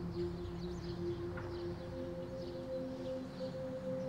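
Background score of sustained drone notes: a held low note fades away while a higher note comes in about a second and a half in.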